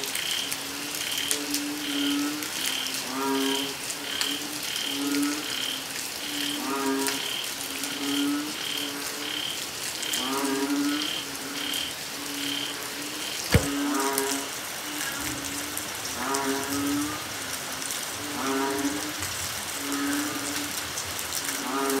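Banded bullfrogs (Asian painted frogs, Kaloula pulchra) calling, a low mooing call every second or two, over a chorus of other frogs. A high chirping pulse of about two a second runs beneath the calls and stops a little past halfway, where a single sharp knock sounds.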